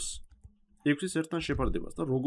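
A man's voice narrating in Georgian, with a short pause early on before he carries on talking.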